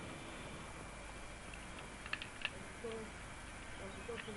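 A few small clicks from an electrical cable connector being handled and wired by hand, about two seconds in, over a steady background hiss.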